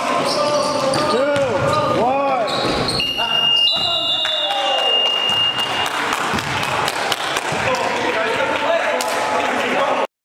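A basketball bouncing on a gym floor among players' voices in the hall, with a high steady tone sounding for about three seconds, starting about three seconds in.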